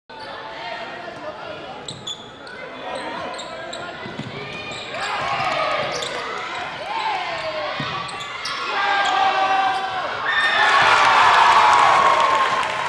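Sounds of a basketball game in a gym: the ball dribbling on the hardwood floor, sneaker squeaks, and players and spectators calling out. The voices grow louder and busier about ten seconds in.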